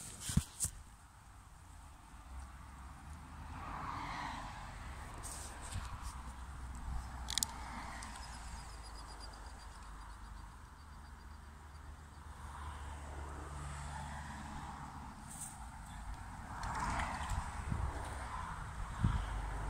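Outdoor ambience dominated by a low, steady rumble of distant road traffic that builds a few seconds in and fades near the end, with a few sharp handling clicks at the start.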